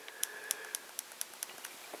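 Faint clicks at an even pace, about four a second, over a faint steady high tone.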